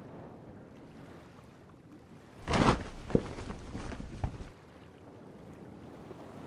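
Faint ambience of water lapping around a small boat, with a brief louder rush of noise about two and a half seconds in and a few light knocks after it.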